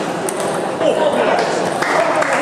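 Table tennis balls clicking sharply off bats and tables, a few separate strikes, over a steady babble of children's voices echoing in a large hall.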